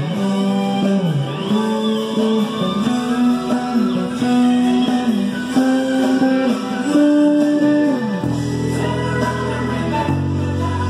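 Rock music with a sung melody that slides between held notes over electric bass; about eight seconds in the singing line ends and a sustained low chord takes over.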